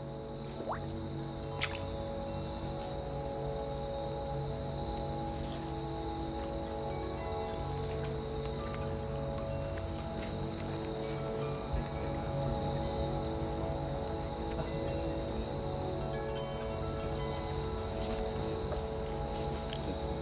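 Steady, high-pitched chorus of insects, continuous and unchanging, with sustained music tones held underneath it.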